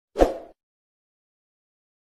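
A short, loud pop sound effect from a stock subscribe-button animation, about a quarter second in, as the button collapses away.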